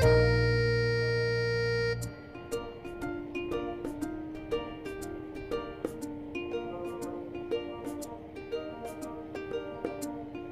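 Background music: a loud held chord for about two seconds, then a light run of short plucked-string notes.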